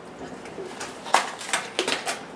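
A few light clicks and taps as sprouting seeds are brushed off a hand into a glass mason jar of water, the hand touching the glass rim.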